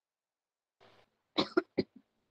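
A person coughing: a quick run of three short coughs about halfway through, after a faint rustle.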